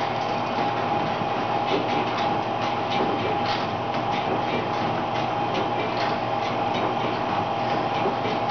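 Home elliptical trainer in use: a steady mechanical whir with a constant hum, and repeated clicks and knocks from the pedal linkage as she strides.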